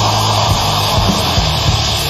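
Death metal band on a 1989 demo recording: heavily distorted guitars and bass hold a low, steady droning chord, with only sparse drum hits.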